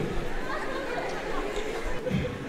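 Quiet speech and chatter, voices only: low talk in a large hall with faint murmuring from a seated audience.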